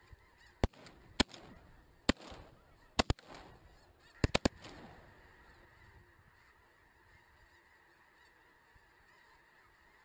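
Shotgun volley: about eight sharp shots in quick succession over the first four and a half seconds, some in close pairs and a triple. A large flock of snow geese calls continuously, fading to steady honking after the shooting stops.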